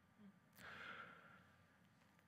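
Near silence, with one faint breath from a man into a headset microphone about half a second in, lasting under a second.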